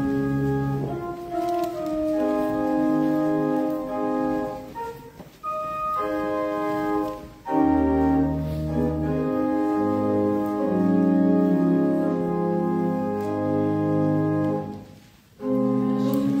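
Church organ playing the introduction to a hymn: held chords in phrases with short breaks about five, seven and a half and fifteen seconds in, leading into congregational singing.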